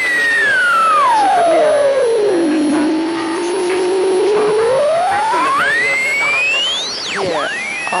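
An electronic whistling tone slides slowly down from a high pitch to a low one, holds low for a couple of seconds, then sweeps back up. Fainter sliding whistles cross it, and a quick swoop down and up comes near the end.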